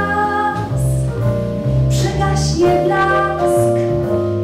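A woman singing into a microphone with a live jazz band: double bass, saxophone and drums.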